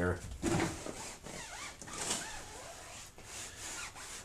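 Foam applicator block wiping tire dressing across a rubber tire sidewall: an irregular soft rubbing with faint squeaks.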